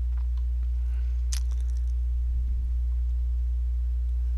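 Steady low electrical hum with a few stacked overtones, carried on the recording throughout. A single sharp click about a third of the way in.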